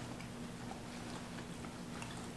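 Faint chewing and mouth sounds of people eating oven-baked sweet potato chips, a few soft scattered clicks rather than a loud crunch, over a steady low hum.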